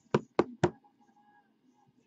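Four quick, sharp knocks within the first second, from hard plastic card holders and card boxes being handled on a tabletop.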